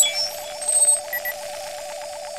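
Electronic interface sound effect for an 'access granted' scanner display: a steady electronic tone with a fast pulsing warble over it, and a pair of short high beeps about a second in.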